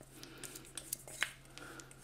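Faint scraping and light ticks of a spatula against a stainless steel bowl as thick chocolate cream is scraped out, with one sharper tick a little after a second in.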